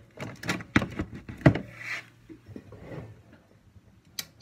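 Sharp clicks and knocks of a ceramic wax warmer being handled and switched on: a quick run of clicks in the first second and a half, the loudest about a second and a half in, then a few softer knocks.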